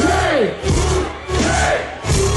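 Live hip-hop concert sound through the PA: a loud cry that rises and falls in pitch, repeated about three times, over a deep bass with the crowd yelling. Fuller music comes back in at the end.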